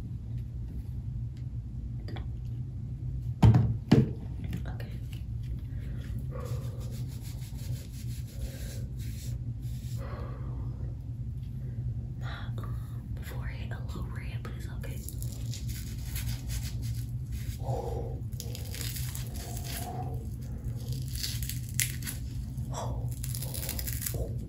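Faint scratching and rustling of fingers working a lace-front wig along the hairline, over a steady low hum. Two sharp knocks, the loudest sounds, come close together about three and a half seconds in.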